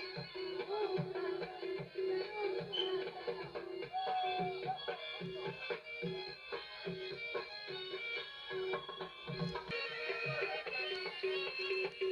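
Live South Asian folk music: a plucked-string melody over a steady drum beat of about two strokes a second, with a held note running underneath.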